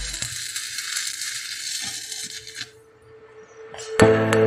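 Shielded metal arc (stick) welding arc crackling and hissing, with scattered pops. It cuts off suddenly about two-thirds of the way through as the weld run ends. A faint held note of background music continues underneath.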